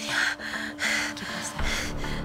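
A distressed woman breathing in quick, heavy gasps, about two a second, over a steady low music drone; a deeper swell of music comes in near the end.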